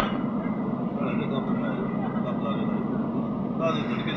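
Steady road and engine noise heard inside the cabin of a car moving along a motorway, with faint voices over it.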